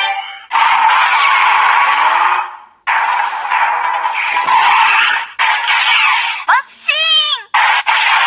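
Kiramai Changer Memorial Edition toy bracelet playing a talk-mode audio clip through its small built-in speaker after its button is pressed. Long stretches of noisy, crackly sound with voice in it, then a high squealing voice that glides up and down near the end.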